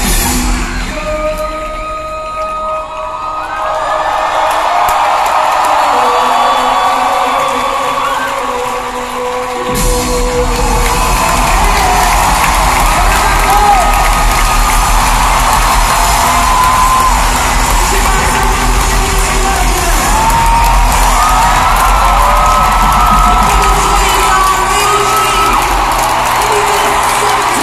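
Live band music heard from the arena seats, with the crowd cheering and whooping. The music is thin at first, then the bass and drums come back in about ten seconds in.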